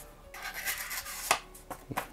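Dull folding-knife blade (VG10 steel) dragged through a sheet of paper, rasping and tearing at it rather than slicing cleanly, with two sharp ticks in the second half: the edge has gone dull and doesn't cut.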